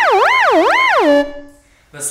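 Slide Whistleinator, a motorized digital slide whistle, playing a synthesized slide-whistle tone (flute physical model with additive whistle synthesis) that swoops repeatedly up and down in pitch. A little past a second in it drops to a low held note and cuts off.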